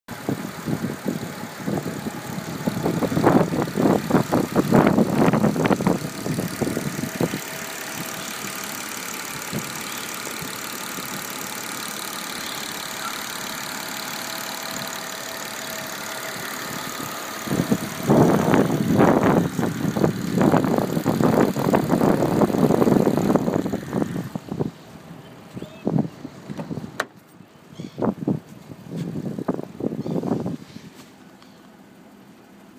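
BMW 325 straight-six engine fitted with an LPG autogas conversion, idling steadily. Two stretches of loud, irregular crackling noise of a few seconds each sit over it, and in the last few seconds the engine sound turns quieter and duller.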